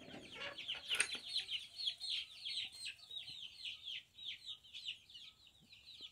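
A flock of young chicks peeping continuously behind a wire coop door: many short, high-pitched, downward-falling cheeps, several a second, overlapping one another. A brief sharp sound stands out about a second in.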